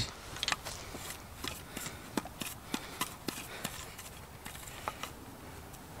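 Quiet scattered light clicks and rustles, irregular and short, over faint outdoor background noise.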